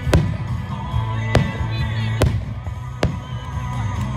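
Aerial fireworks shells bursting: four sharp bangs about a second apart, over music with a steady low bass line.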